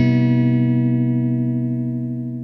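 Epiphone Les Paul SL electric guitar, both ceramic pickups selected, played clean with no effects through a Traynor YGL-2A all-tube combo amp: a single chord left to ring, slowly fading.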